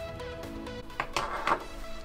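Background electronic music playing steadily, with two short sharp sounds about a second in.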